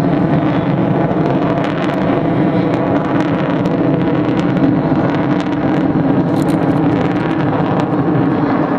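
Jet engines of four F/A-18 Hornets flying overhead in tight formation: a loud, steady roar with scattered crackles.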